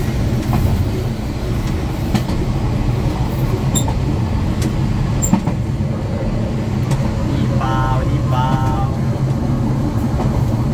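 Passenger train running along the line, heard from the rear of the train: a steady low rumble from the wheels on the track, with occasional sharp clicks. Two short pitched calls sound about eight seconds in.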